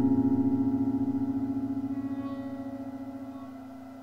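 Acoustic guitar's final strummed chord ringing out, fading slowly and steadily with a slight waver, at the end of the song.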